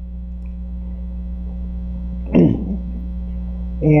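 Steady electrical mains hum with a buzz of overtones on the recording. A brief falling vocal sound comes about two and a half seconds in.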